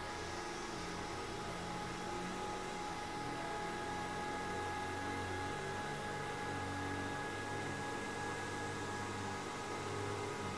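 iOptron CEM60EC equatorial mount slewing under about 120 pounds of telescopes and counterweights: a steady motor whine made of several even tones. Lawnmowers run outside, louder than the mount.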